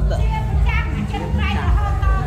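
Several people talking, with a child's voice among them, over a low steady hum.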